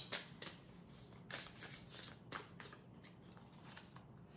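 A deck of tarot cards being shuffled by hand, passed from one hand to the other: faint, irregular soft flicks and slaps of the cards.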